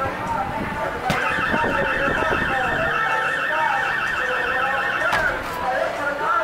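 An electronic alarm tone with a fast warble starts suddenly about a second in and cuts off about four seconds later, over background chatter.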